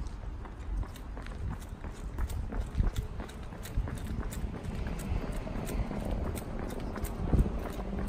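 Running footsteps on asphalt, a quick even beat of steps heard through the phone's microphone carried by the runner.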